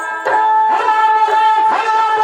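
Sarangi bowed in a melody that settles on one long note with sliding ornaments, over a few strokes of dhadd hand drums, in Punjabi dhadi folk music.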